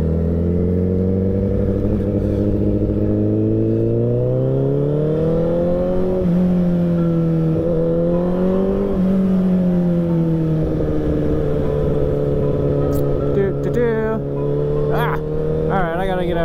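Sportbike engine pulling away from low speed: the revs climb over the first several seconds with a few brief dips, then hold steady at a cruise. A voice speaks briefly near the end.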